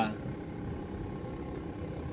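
Steady low rumble of a running car heard from inside its cabin.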